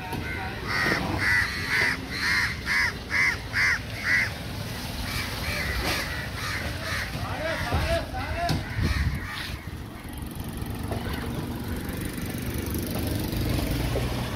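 A bird calling in a quick, evenly spaced run of about eight short calls, roughly two a second, in the first four seconds, with more scattered calls or voices a few seconds later. A low, steady rumble runs beneath.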